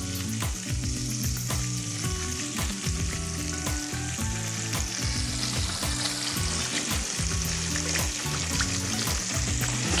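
Raw fish fillets sizzling and crackling in hot spiced oil in a stainless-steel pan as they are laid in, a steady high hiss with many small pops. Low steady tones that change pitch every second or so run underneath.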